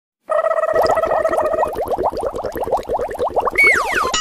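Edited-in cartoon sound effects: a held buzzy tone, then a rapid run of short rising chirps, about nine a second, ending in a falling whistle near the end.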